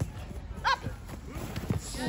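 Soccer players' footsteps and ball touches thudding on grass as they run past close by, with a brief high-pitched yell about two-thirds of a second in.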